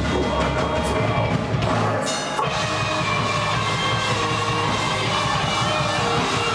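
Rock band playing live: drum kit with bass drum and electric guitars, loud and dense throughout.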